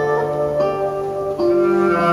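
Live acoustic band playing an instrumental passage: plucked strings carry a melody, the notes changing every second or so over a long held low note.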